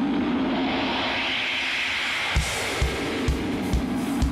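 Live concert drum kit coming in over a steady sustained wash of sound: a bit over halfway through, a kick drum starts a steady beat of about two strokes a second, with cymbal strokes above it.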